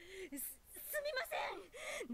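Faint anime dialogue: a voice speaking quietly, with a breathy gasp about half a second in.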